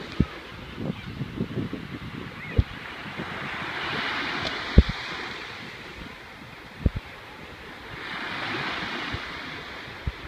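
Small waves breaking and washing up on a sandy beach, a steady hiss that swells twice, about four seconds in and again near the end. Wind gusts buffet the microphone in a few short low thumps, the loudest about five seconds in.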